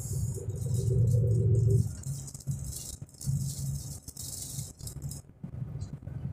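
Inside a truck cab on a mountain descent: the engine runs with a low hum, strongest in the first couple of seconds, under a continuous light rattling and clicking of the cab and fittings.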